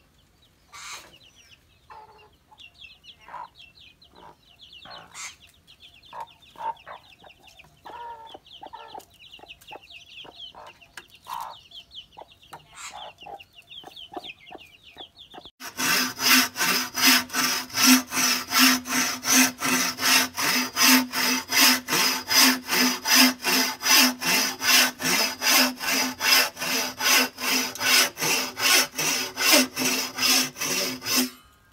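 Chickens clucking with chicks cheeping in rapid high peeps. About halfway through, a bow saw starts cutting through a green bamboo pole in loud, even strokes, about three a second, the hollow pole giving a low ring under each stroke.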